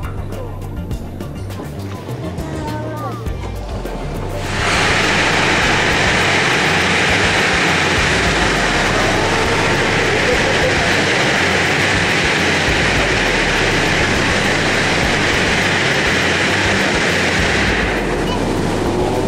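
Water rushing and foaming along a submarine's hull as its ballast tanks are blown during a surfacing demonstration. After a few seconds of quieter water movement, a loud, steady rush of air and water starts suddenly and holds.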